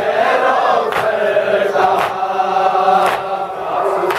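A group of men chanting a noha, a Shia lament for Muharram, together in long held notes. Sharp slaps about once a second keep time with it, from hands beating on chests (matam).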